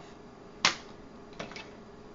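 A sharp click about half a second in, then a fainter tap about a second later: small cosmetic containers being handled and set down on a table.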